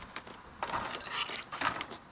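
Close handling noise with a few light knocks and clatters: a hand brushing against or near the camera. There are two short bursts of rubbing about half a second in and again at about a second and a half.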